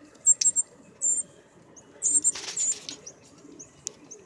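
Northern cardinals giving short, sharp, high chip notes in quick clusters, with a rustling flutter about two seconds in as a bird moves off through the shrub.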